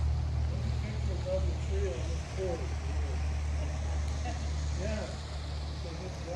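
A steady low rumble, with faint distant voices over it.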